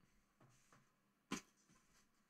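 Near silence: room tone, with one brief faint tap just past halfway.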